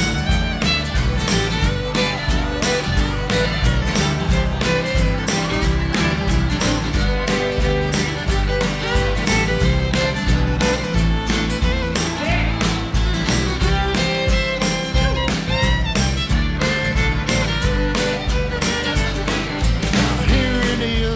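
Instrumental break of an acoustic country band: fiddle playing over strummed acoustic guitar, bass and drums keeping a steady beat.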